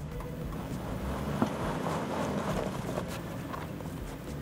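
A 2008 Hummer H3 crawling up a steep slope of sand and rock: the engine runs steadily under load as the tyres grind over the ground. There is a single sharp knock about one and a half seconds in.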